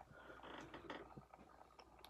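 Near silence: room tone with a low hum and a few faint small clicks.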